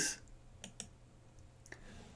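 Faint computer mouse clicks: two quick clicks a little over half a second in, and a couple more near the end.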